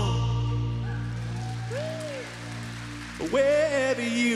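Live acoustic worship song: a man's held sung note ends, the accompaniment rings on softly with a short faint vocal phrase in the middle, and about three seconds in he resumes singing over the acoustic guitar.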